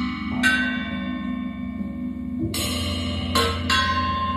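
Bell-like struck tones ring out and slowly decay over a steady low drone: one strike just after the start, a louder one about two and a half seconds in, then two quick strikes near the end.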